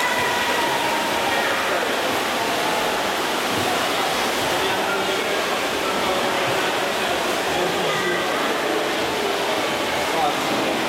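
Steady wash of splashing water and spectators' voices in an indoor swimming-pool hall during a race.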